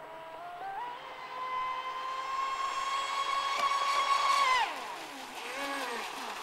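Electric RC offshore powerboat's brushless motor (KB 45-77, 1600 kV on a 6S LiPo) and two-blade carbon propeller whining at speed. The pitch climbs in steps during the first second, then holds high and steady, getting louder as the boat comes closer. About four and a half seconds in the pitch drops sharply, and a brief lower whine rises and falls near the end.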